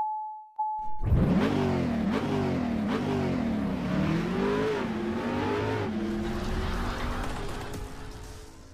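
A warning chime beeps twice, then about a second in a car engine starts and revs up and down several times before the sound begins fading near the end.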